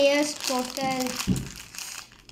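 Plastic packaging crinkling as it is handled, alongside a child's voice.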